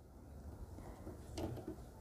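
Quiet room with a single faint click about one and a half seconds in, from a hand working the front-panel control knobs of a TIG inverter welder.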